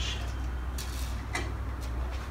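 Faint handling sounds of screws being fitted into a metal 3D-printer heated-bed plate, with two light ticks about a second apart, over a steady low hum.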